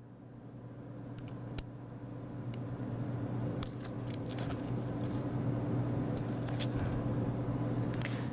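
Light clicks and scraping of a utensil levelling maple sugar in a small metal measuring cup, over a steady low hum that grows gradually louder.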